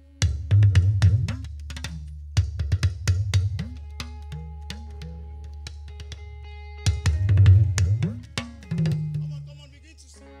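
Talking drum struck with a curved stick in three quick flurries, its pitch sliding up and down as the player squeezes the drum under his arm. Held notes from the band sound faintly between the flurries.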